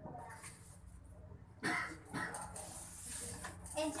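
Indistinct voices murmuring in a small room, with a sudden louder burst about one and a half seconds in. A waiter's spoken 'enjoy' comes at the very end.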